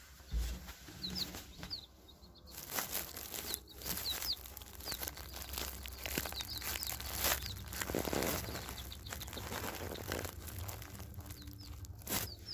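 Baby chicks peeping, scattered short high chirps over a rustling noise among the wood shavings of the brooder.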